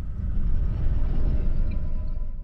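Netflix logo sting in a trailer: a deep, rumbling sound-design swell that rises over the first half second and holds heavy bass.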